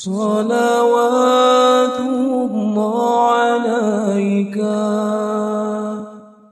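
Unaccompanied voice singing a line of an Arabic sholawat, a devotional song in praise of the Prophet Muhammad, drawn out over long held notes with wavering ornaments in the middle. The phrase starts suddenly and fades out at the end.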